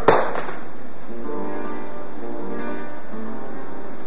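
A single sharp crack right at the start, then an acoustic guitar playing slow plucked notes and strummed chords.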